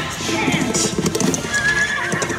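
Ride show soundtrack of cartoon horses galloping: clip-clopping hoofbeats and a horse whinny, mixed with music.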